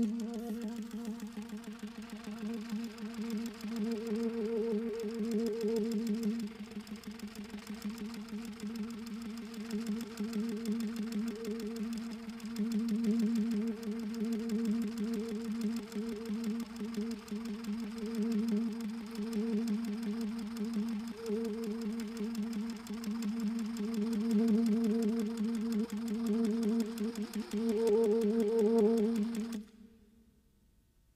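Soprano saxophone holding one low note unbroken for about thirty seconds, with a rapid pulsing flutter. It swells and fades in waves, is loudest just before the end, and then stops sharply.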